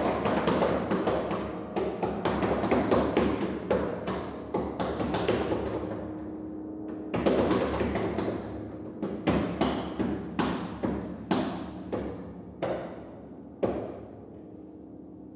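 Steinway grand piano played percussively from inside the case: a dense flurry of struck, ringing notes, a lull about six seconds in, then single strikes about every half second, each ringing and fading and growing quieter toward the end.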